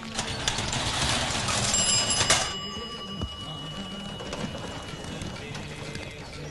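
Background film music, with a bicycle bell rung about two seconds in; its ringing tones fade over the following few seconds.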